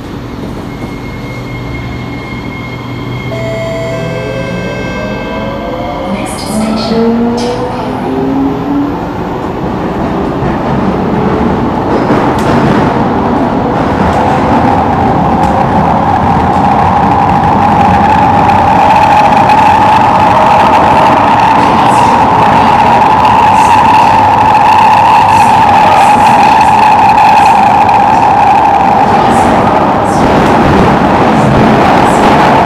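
Singapore MRT electric train pulling away and gathering speed, heard from inside the carriage: the traction motors whine upward in pitch in steps for the first several seconds, then the running noise of the wheels on the rails builds up and settles into a loud, steady roar at speed.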